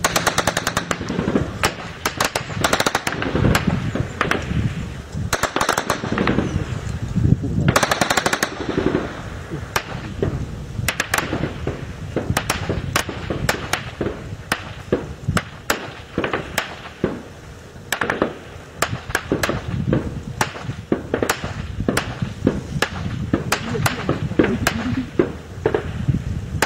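Small-arms gunfire: rapid bursts of automatic fire over the first several seconds, then scattered single shots and short strings of shots.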